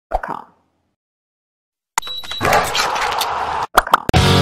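A short pop, then silence, then about two seconds of dense, noisy sound-effect swell that cuts off sharply with a couple of clicks. This is the lead-in of a TV channel's intro.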